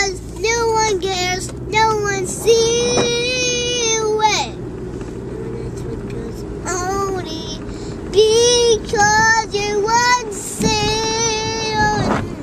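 A young girl singing a made-up song loudly, in long held, wavering high notes, with a pause of about two seconds in the middle. A low car road rumble runs underneath.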